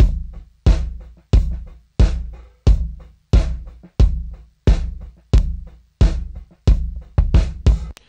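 A kick drum recorded with three mics, one inside the shell near the beater, one at the resonant head's port hole and a sub kick, played back on its own: a steady beat of about one and a half hits a second, each hit a low boom with a bright beater click that dies away quickly. Near the end a few hits come closer together in a short fill.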